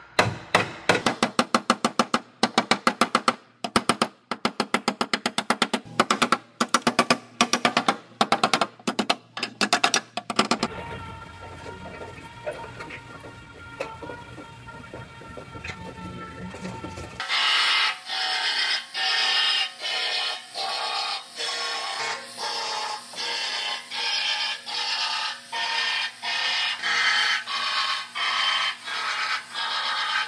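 Rapid hammer blows on car-body sheet metal, several a second, knocking a buckled floor and rolled bracket back into shape; they stop after about ten seconds. From about seventeen seconds comes a steady back-and-forth scrubbing, about two strokes a second.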